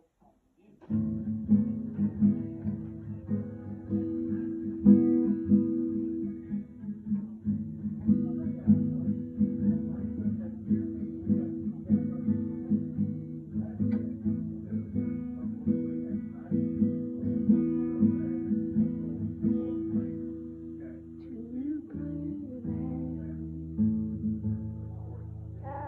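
Acoustic guitar being strummed, starting about a second in and playing on steadily.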